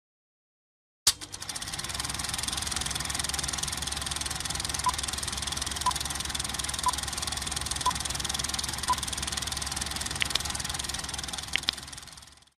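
Film projector running, a steady rattling whir with a low hum, starting with a click about a second in. Five short beeps come one second apart as a countdown leader ticks down, and two short clicks sound near the end.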